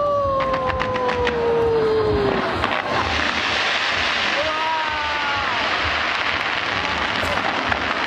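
Aerial fireworks bursting in a dense, continuous barrage of crackles and low booms. A spectator's long cheer slides down in pitch over the first two seconds or so, and a shorter one comes about five seconds in.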